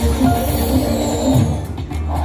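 Music and reel-spin sounds from a Cai Yun Heng Tong (Prosperity Link) video slot machine as its reels spin.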